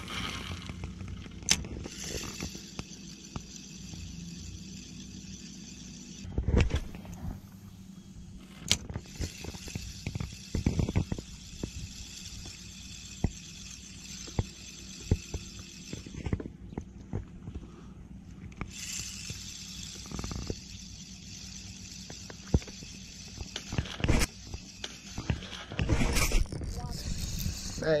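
Spinning reel being cranked in three long stretches of winding, with pauses between, as a topwater lure is worked back. Scattered light knocks of hands and rod against the reel and kayak come in between, with a sharper thump about six seconds in.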